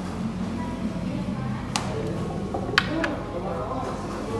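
Two sharp taps on a tabletop about a second apart near the middle, a small plastic toy figure being set down, over a low murmur of background voices and a steady hum.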